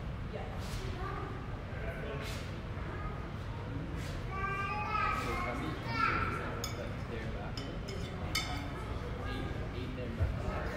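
Indistinct voices of several people in a large, echoing gym hall, with a few louder calls about halfway through and a few sharp knocks near the end.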